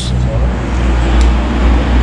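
Ford Fusion V6 engine idling steadily with a low hum. It is running with an engine-flush cleaner in its old oil, ahead of the oil drain.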